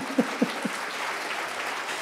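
A large seated audience applauding.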